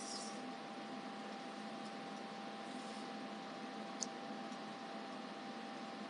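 Steady whir of cooling fans from the computer and test equipment, with a thin high-pitched whine held on one note. A single sharp click comes about four seconds in.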